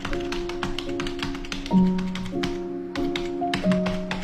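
Computer keyboard typing: a quick, irregular run of key clicks over background music with slow, held notes.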